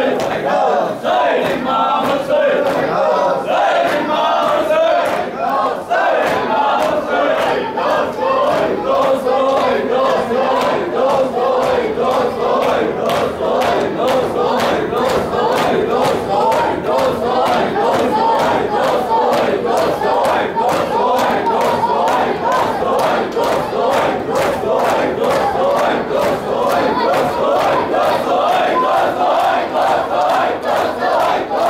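A crowd of men chanting a Muharram lament together, with a steady beat of hand slaps from matam, ritual chest-beating, running through the chant.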